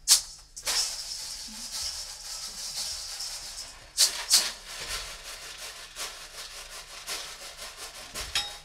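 Kitchen-utensil percussion: a large bowl tilted and swirled by hand so that loose contents rattle and swish around it like a shaker. There are a couple of sharp clicks at the start and two more strikes about four seconds in.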